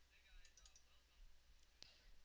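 Near silence with faint computer mouse clicks: a few small ticks about half a second in, then a single sharper click near the end, as folders are opened in a file-picker dialog.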